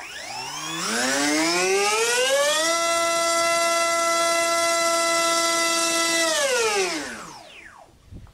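Hobbyzone AeroScout S2's brushless electric motor driving a Master Airscrew 5x4.5 bullnose two-blade propeller, run up to full throttle for a static thrust test. The whine rises in pitch over about three seconds, holds steady at full speed for about three and a half seconds, then falls away as the motor spools down near the end.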